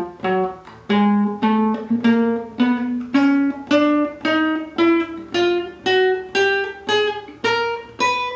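Classical guitar playing a chromatic four-finger exercise, fingers 1-2-3-4 fretting one note after another. Single plucked notes come about two a second, climbing in pitch in small even steps.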